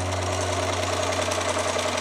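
A sewing machine running at speed, a rapid even chatter of stitching.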